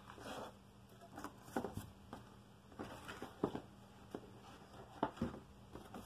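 Small objects being handled and put away: scattered light knocks, taps and rustles at irregular intervals, with several clustered in the middle and a slightly louder knock about five seconds in.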